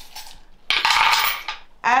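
A bowlful of small charms (dice and little metal pendants) tipped out onto a wooden tray, clattering as they spill and scatter in one burst about a second in.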